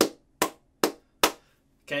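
Four sharp hand claps, evenly spaced about two and a half a second, by one person.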